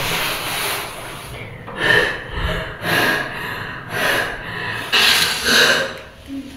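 A girl gasping for breath: about half a dozen labored breaths roughly a second apart, acted as an asthma attack.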